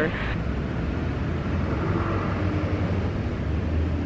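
Steady low rumble of outdoor background noise, with a faint held hum in the middle.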